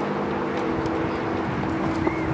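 A steady, even engine drone.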